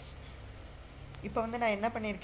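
Onions and green chillies frying in oil in an aluminium pressure cooker, with a faint, steady sizzle.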